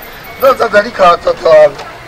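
Speech only: a voice speaking a few short, loud phrases.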